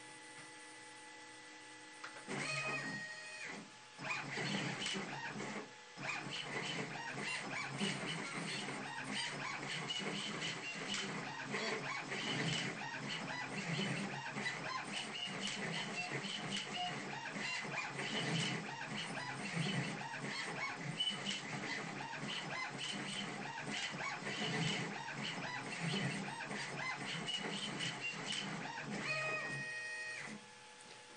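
Four stepper motors of mixed sizes, a size 34 5 A motor, a 3 A motor and two 0.7 A motors, are driven by a KStep microstepping driver through a G-code program. A short whine comes about two seconds in. From about four seconds on the motors give continuous busy whirring of constantly changing pitch as they speed up, move and stop. Another brief whine comes near the end.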